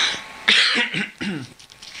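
A person coughing, with a loud, harsh burst about half a second in, followed by brief throaty voice sounds.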